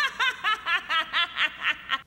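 A woman's high-pitched, maniacal laugh in an anime's English dub, a steady run of short 'ha' bursts about four a second: the cackle of a character gone mad.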